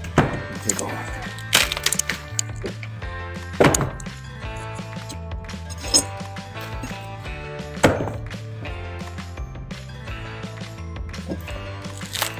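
Sharp wooden knocks and cracks, about five of them a couple of seconds apart, as rotten hardwood barn floorboard pieces are pried loose with a pry bar, over steady background music.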